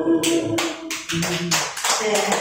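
Scattered hand claps from a few people, irregular and sharp, as the karaoke backing music dies away about one and a half seconds in.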